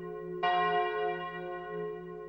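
Church bell tolling slowly. It strikes once about half a second in, and its many tones then ring on and fade gradually, over a steady low hum that carries on from the stroke before.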